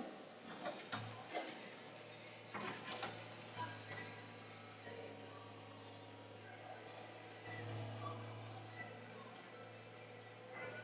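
Low, steady hum of a log loader's engine heard from inside its cab, swelling briefly about a second in and again near eight seconds as the machine works and swings. A few faint clicks and rattles come in the first three seconds.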